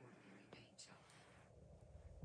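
Near silence with faint whispered speech.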